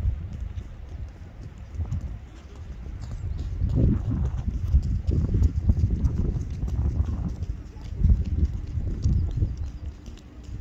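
Running footsteps on an outdoor athletics track, an irregular patter over a low rumble that grows louder about halfway through.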